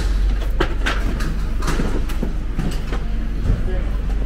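Street ambience at an outdoor market: a steady low rumble with a string of irregular clacks and knocks running through it.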